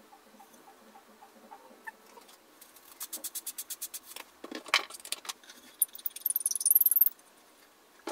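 Light clicks and knocks from handling a wooden desk leg and small assembly hardware, played back sped up: a quick run of clicks, a sharper knock, then a dense high rattle that stops abruptly.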